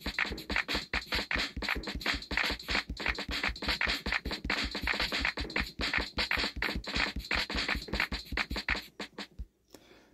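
Drum-machine loop from a phone beat app's Boom Bap Classic kit, played back at 240 BPM: a steady, very fast run of kick, drum and cymbal hits that cuts off about half a second before the end.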